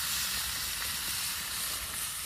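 Two large porterhouse steaks sizzling steadily in a cast iron skillet.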